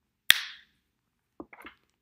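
A single sharp snap made by a hand, a little way in, dying away quickly.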